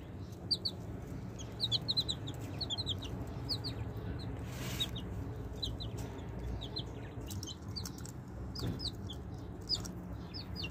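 Baby chicks peeping: many short, high, downward-slurred peeps in quick clusters of two or three, over a steady low background rumble.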